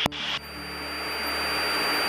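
A radio click, then a steady hiss of radio static with a thin high whine over the aircraft intercom, growing slowly louder, with the Cessna 152's engine drone underneath.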